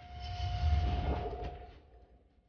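Dramatic soundtrack effect: a steady electronic tone is held beneath a low, rumbling whoosh that swells to a peak about a second in. Both then fade out.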